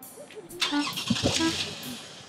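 A car door being opened by its handle, with a steady car noise that starts about half a second in and fades near the end.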